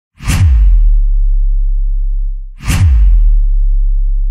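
Two cinematic whoosh-and-boom sound-effect hits about two seconds apart, each a sharp swish followed by a deep low rumble that holds and then fades.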